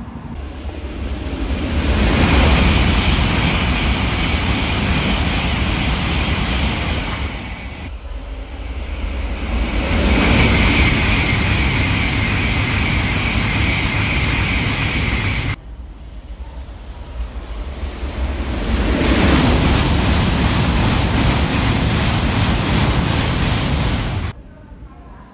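Shinkansen bullet trains passing at high speed, three passes cut together. Each swells within a couple of seconds into a loud, steady rush of air and wheel-on-rail noise with a high whine in it, and each breaks off abruptly at a cut, about 8 and 15 seconds in and at the very end.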